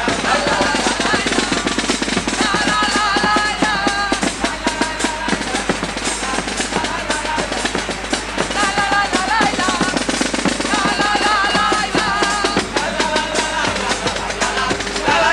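Carnival murga band music: rapid snare and bass drum beating throughout, under a wavering melody that comes and goes.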